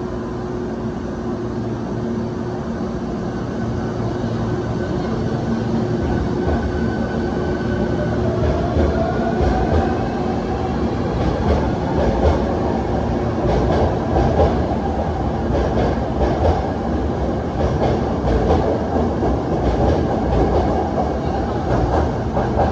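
Hankyu 1300 series electric train pulling away from a station: a steady hum at first, then the traction motors' whine rises in pitch as the train picks up speed, from about six seconds in. From about eleven seconds the wheels click over the rail joints as the cars pass close by, getting louder.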